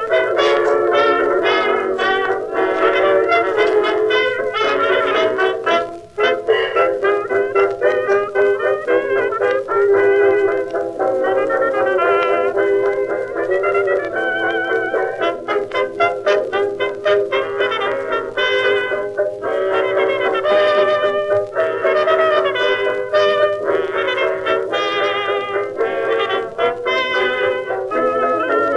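A 1925 80 rpm disc recording of a 1920s dance orchestra playing an operetta dance tune, with brass to the fore. The sound is thin and confined to the middle range, typical of an early record, with a brief break about six seconds in.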